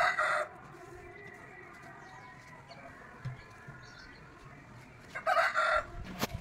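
A chicken calling twice: two short, loud calls, one at the start and one about five seconds in, with faint background between.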